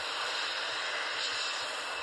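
A steady, even hiss with no pitch and hardly any low rumble, unchanging throughout.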